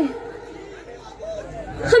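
Background chatter from an audience between a woman's lines, with her microphone-amplified voice starting again near the end.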